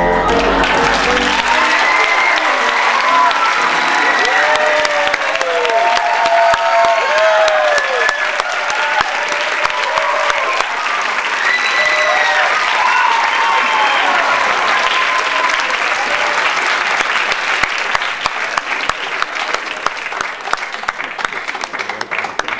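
Theatre audience applauding and cheering, with drawn-out calls and whoops over dense clapping, as the music stops just at the start. The clapping thins out toward the end.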